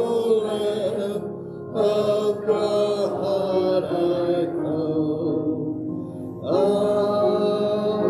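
Hymn sung a cappella, in phrases of held notes, with a man's voice on the microphone leading. A new phrase begins strongly about two seconds in and another a little past six seconds.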